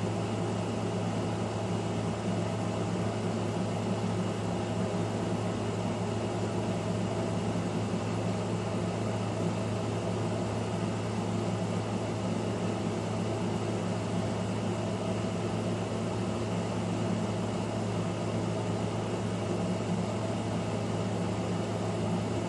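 A steady low machine hum with an even hiss over it, unchanging throughout.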